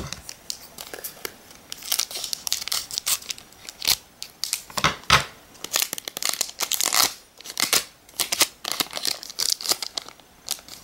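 Foil Pokémon card booster pack wrapper crinkling and tearing as it is handled and torn open by hand, a run of irregular sharp crackles.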